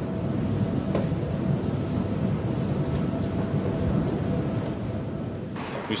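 Large wind turbines running: a steady low rumble with a faint, even hum above it.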